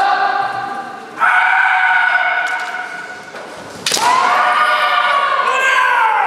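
Kendo kiai: long drawn-out shouts from the two fighters squaring off, three in turn, each held for a second or more and falling away at the end. A sharp knock, such as a bamboo shinai strike or a stamping foot, lands just before the third shout, about four seconds in.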